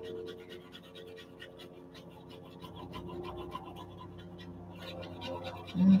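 Oil pastel scribbling on drawing paper with light, even pressure: a quick, steady run of soft scratchy strokes.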